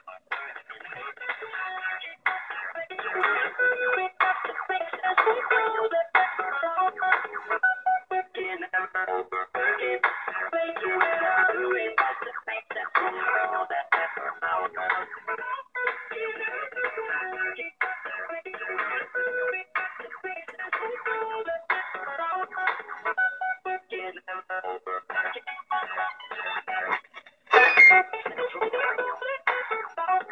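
Electronic dance music received over AM on a Yaesu FT-817 from a cheap 433 MHz AM data-transmitter module, its data input given a small DC bias so it can carry audio. The music comes through the radio's speaker narrow-band and without bass. There is a brief louder burst near the end.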